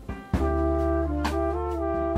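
Live jazz band: the full band comes in on a sharp drum accent about a third of a second in, then trumpet holds and moves between notes over sustained keyboard chords, bass and drums.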